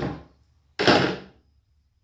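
A single brief handling noise from the groundbait gear, a riddle and a plastic bucket being set down. It is one noisy scrape-like burst about a second in that fades within about half a second.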